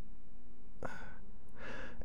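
A man breathing between sentences: a short breath about a second in, then a longer intake of breath near the end.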